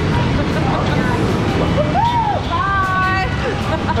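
Fast-moving, churning water of a current-driven river rushing around a camera held at water level, a steady loud wash of noise. Halfway through, a person's voice calls out briefly, rising and falling and then holding a note.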